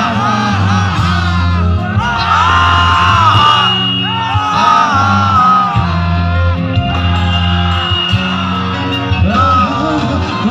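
Live band music with a male singer singing into a microphone, over held bass notes.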